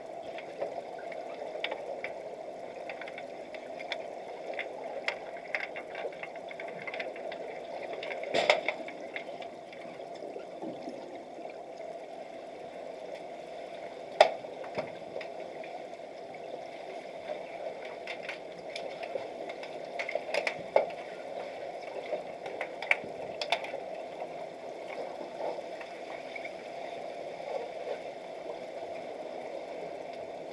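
Underwater sound of an underwater hockey game picked up by a submerged camera in a swimming pool: a steady muffled water noise with scattered sharp clicks and knocks, the loudest about 14 seconds in, with others near 8 and 21 seconds.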